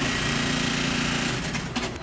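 A machine in a garment factory runs steadily, a motor hum with a higher whine and a hiss over it. It starts suddenly and dies away about a second and a half in.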